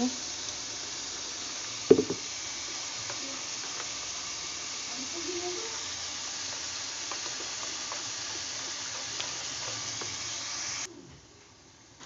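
Steady sizzle of onion masala frying in a pan, with a spoon stirring besan batter in a glass bowl. A single sharp knock comes about two seconds in, and the sizzle cuts off abruptly near the end.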